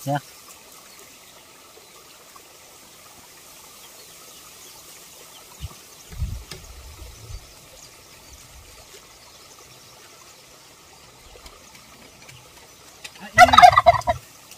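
A short, loud call from a domestic fowl near the end, over a quiet background. A few soft low thuds come around the middle as a knife slices spears off a pineapple.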